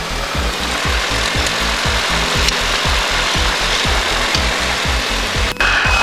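Cessna Cardinal 177's piston engine and propeller heard inside the cabin: a loud, steady drone over a rapid low throb, at low power just before the takeoff run. A single sharp click comes near the end.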